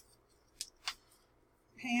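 Two brief swishes of garment fabric being shaken out and handled, about half a second and a second in. A woman's voice starts near the end.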